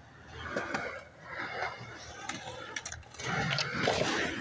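Skateboard wheels rolling and clattering over rough concrete in uneven swells, with a few light clicks. The sound is loudest near the end as the board comes right up to the microphone.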